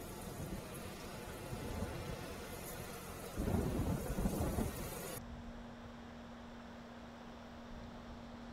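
A steady rushing, rumbling noise with a louder low rumble lasting about a second and a half, starting about three and a half seconds in. Near the middle it drops to a quieter hiss with a steady low hum underneath.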